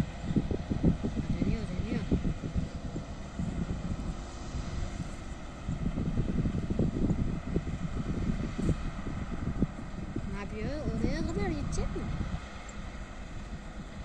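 A New Holland combine harvester running steadily as it harvests, heard from a distance, under a gusty low rumble of wind on the microphone. A person's voice comes in briefly near the end.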